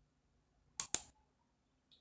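Two quick computer mouse clicks, the second sharper and louder, about a second in.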